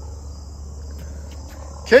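Steady background of a continuous high-pitched buzz over a low steady hum, with no distinct events.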